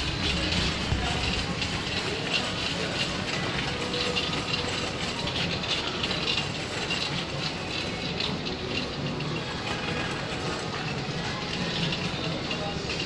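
Shopping cart rolling over a hard supermarket floor, its wheels and wire frame rattling steadily.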